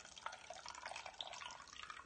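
Strained carrot soup trickling and dripping from a squeezed nut milk bag into a glass bowl: a faint run of small drips.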